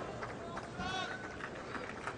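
Faint, indistinct speech over the low background noise of a tennis stadium, with a brief voice near the middle.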